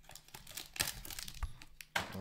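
Cardboard hobby box of trading cards being opened and its plastic-wrapped card pack pulled out, crinkling and crackling irregularly, loudest just before the end.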